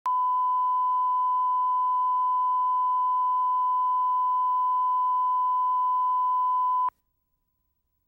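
Videotape line-up test tone accompanying SMPTE colour bars: a single steady pure tone at the standard 1 kHz reference pitch, which cuts off suddenly near the end.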